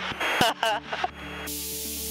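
Light aircraft's piston engine running steadily, heard through the headset intercom. About one and a half seconds in, a burst of static hiss opens abruptly, typical of the intercom or radio squelch opening.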